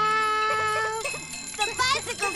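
A high, childlike character voice singing a children's song over a light tinkling accompaniment. It holds one long note for about a second, then moves through shorter, quicker notes.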